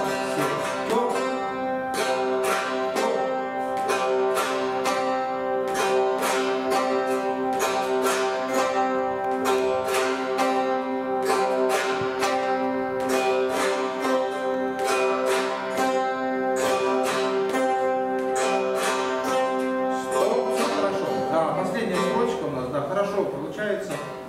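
Several chatkhans, Khakas plucked board zithers, played together by learners in a rhythm exercise. They pluck the same few notes over and over in a steady repeating rhythm.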